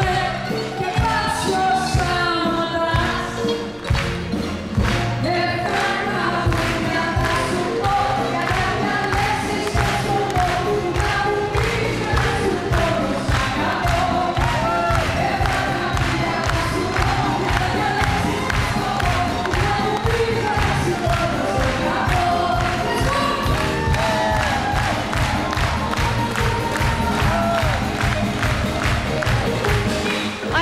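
Live band music with a woman singing into a microphone and the audience clapping along on a steady beat.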